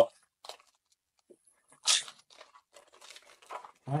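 A foil trading-card booster pack being torn open: one short, sharp rip about two seconds in, then faint crinkling and rustling of the wrapper and cards.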